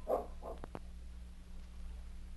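A dog barking in quick repeated barks that stop about half a second in, followed by a couple of faint clicks over the steady low hum of an old radio recording.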